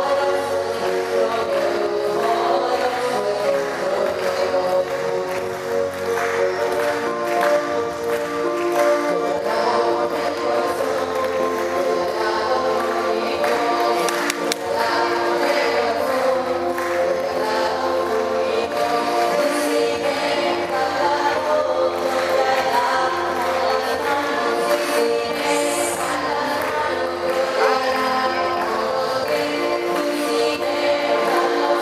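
Choir singing a song with instrumental accompaniment, held notes moving steadily from one to the next without a break.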